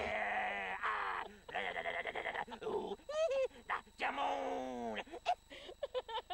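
A woman's long, wavering laughter in several drawn-out stretches, with short breaks between them.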